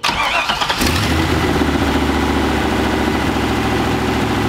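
Turbocharged LS V8 in a Volvo starting up: a brief crank that catches in under a second, then settling into a steady idle. This is the first start after the fuel system was primed.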